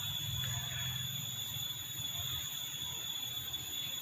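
Steady background hum with a thin, constant high-pitched tone and faint hiss; no distinct sound event.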